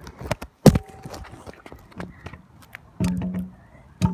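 Stunt scooter dropped onto tarmac in a drop test: one sharp, loud clatter of deck and wheels hitting the ground about a second in, followed by lighter clicks and knocks and a short rattle near the end.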